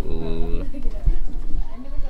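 A person's voice holding one steady note for about half a second, then lower, broken voice sounds.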